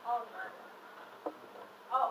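Voices of performers speaking at a distance across a room, indistinct, with a short click about a second in.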